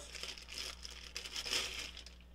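Thin clear plastic bag crinkling and rustling in the hands as a ratchet is slid out of it, in uneven bursts.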